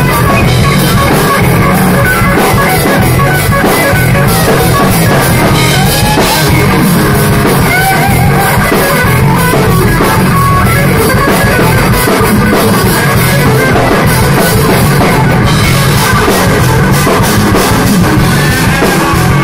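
Live rock band playing loudly, with no singing: a Stratocaster-style electric guitar plays lines with bent notes over a drum kit.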